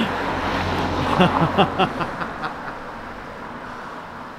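A road vehicle passing on the street, loudest in the first two seconds and then fading away, with a few short laughs about a second in.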